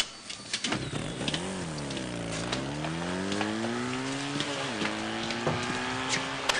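A vehicle engine revving: its pitch climbs, falls, climbs slowly again, drops suddenly about four and a half seconds in, then holds steady. Scattered sharp clicks sit over it.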